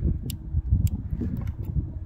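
Wind buffeting the microphone in an uneven low rumble, with several sharp clicks scattered through it.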